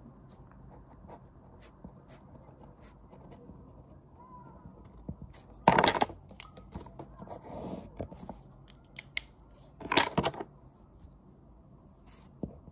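Pen and paper sounds at a desk: faint scratching and ticking of writing on paper, with two short, louder rustles of the paper about six and ten seconds in.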